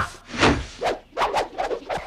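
Martial-arts fight sound effects: a quick run of about six short, sharp swishes and hits as a karate fighter throws kicks.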